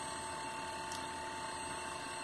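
Steady low hum with a thin, steady high whine from a Samsung inverter air-conditioner outdoor board running on the test bench with its compressor driven, and a faint tick about halfway through.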